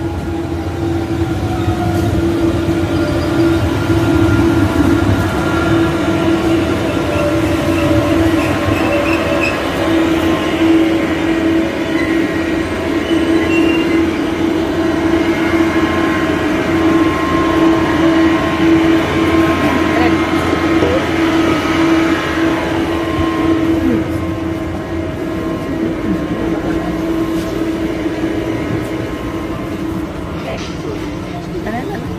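Electric KLIA Transit airport train pulling into the platform and standing at it, with a steady electric whine and hum from the train; a tone falls in pitch in the first couple of seconds as it slows.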